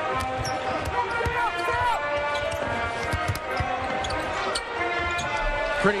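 A basketball dribbled on a hardwood arena floor, irregular bounces, over arena crowd noise and held tones of music.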